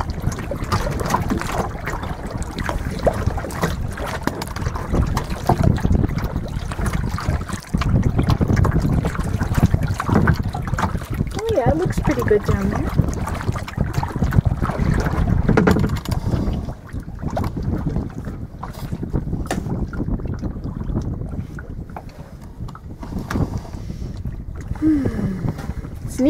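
Wind buffeting the microphone on a plastic kayak out on open, choppy water, a low rumble that comes in gusts and eases in the last third, with water lapping at the hull.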